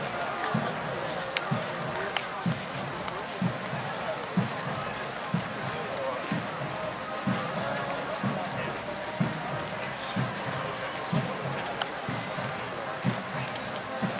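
Many people talking at once in a large outdoor crowd, with no single voice standing out. Dull low thuds recur about twice a second underneath, with a few sharp clicks.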